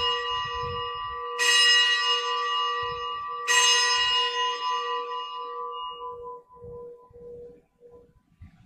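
Altar bell struck twice, about two seconds apart, each strike ringing on and slowly fading over the ring of a strike just before. It is rung at the elevation of the chalice after the consecration at Mass.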